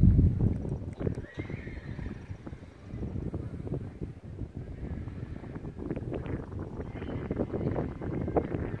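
A horse whinnying.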